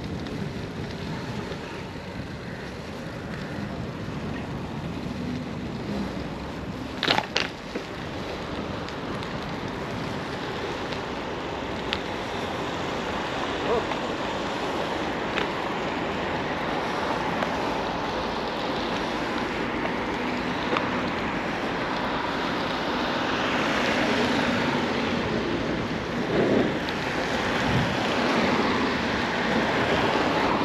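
Wind buffeting the microphone and rolling noise of a bicycle ride over pavement, with two sharp knocks about seven seconds in. Traffic grows louder near the end as a truck comes close.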